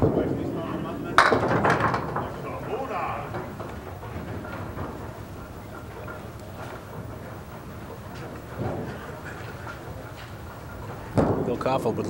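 Candlepins struck by a bowling ball: a sharp clatter of hard wooden pins about a second in, with a short rattle after it, over a steady murmur from the bowling-alley crowd. Near the end a second ball lands on the wooden lane and rolls toward the pins.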